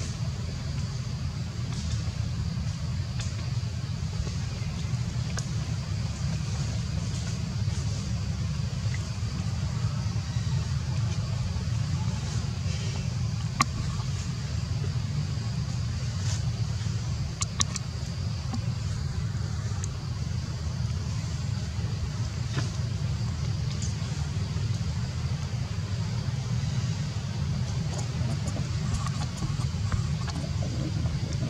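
Steady low outdoor rumble with a faint, steady high tone above it, and two sharp clicks about halfway through.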